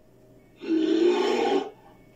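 Brown bear giving a single call of about a second, with a fairly steady pitch.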